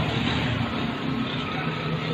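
A motor vehicle running steadily: a low engine hum under an even rush of road noise.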